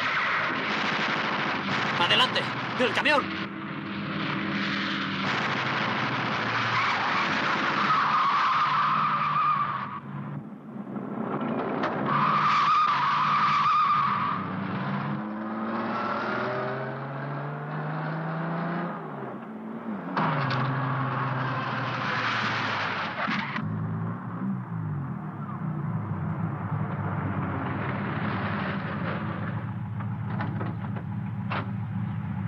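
Engine of an open military car revving up and down as it is driven hard, with tyres squealing in two long screeches and a few sharp cracks about two seconds in.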